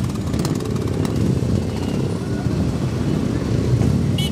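Many motorcycle engines running together as a crowded pack of bikes moves off slowly, a steady low rumble.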